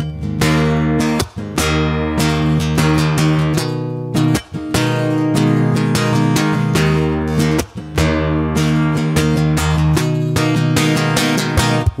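Acoustic guitar strummed in a steady rhythmic chord pattern, with a short break at each chord change, about every three to four seconds.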